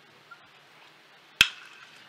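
A baseball bat striking a pitched ball once, a sharp crack about a second and a half in: the ball is chopped into the ground.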